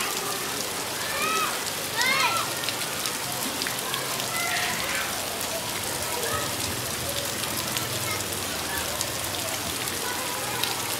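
Steady rain falling on bare ground, a dense even patter of drops. A few short high calls cut through about two seconds in.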